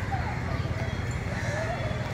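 Faint, distant children's voices calling out, wavering in pitch, over a steady low rumble.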